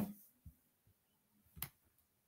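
Near silence with a faint low knock about half a second in and one short, sharp click about one and a half seconds in.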